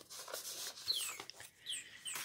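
Paper pages and card being handled and rustled, faint, with a few short high chirps that fall in pitch from a small bird in the background.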